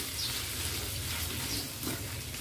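Carrots and ground pork sizzling in a hot wok while being stir-fried, with a wooden spatula scraping and tossing them across the pan a few times.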